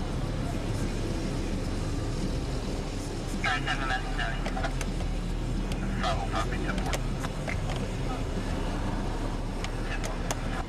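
Car driving, with steady engine and road rumble heard from inside the cabin. Short bursts of voices come through about three and a half and six seconds in.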